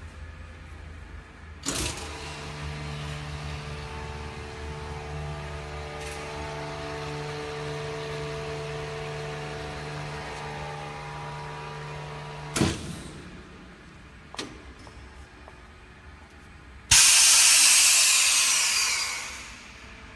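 Double-chamber vacuum packaging machine running a cycle: the lid shuts with a knock about two seconds in, then the Busch R5 rotary-vane vacuum pump runs steadily for about ten seconds as the chamber is pumped down, and it stops with a clunk as the cycle moves on to sealing. Near the end air rushes back into the chamber with a loud hiss that fades over a couple of seconds.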